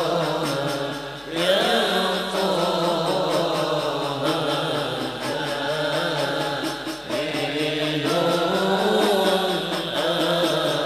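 A group of men singing an Islamic devotional qasidah together over microphones, with long, wavering sung lines, accompanied by frame drums beating a steady rhythm that is clearest at the start and near the end.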